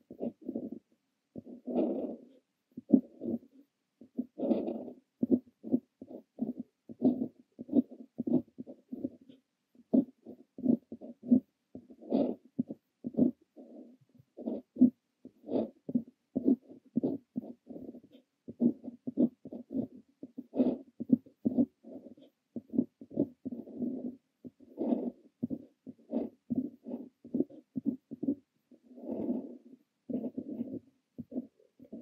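Brass Kaweco Liliput fountain pen with an extra-fine nib scratching across paper as Korean characters are handwritten: a quick run of short pen strokes, several a second, with brief pauses between characters.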